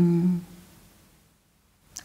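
A woman's voice holding a steady hesitation sound at one pitch for about half a second as she searches for words, then near silence.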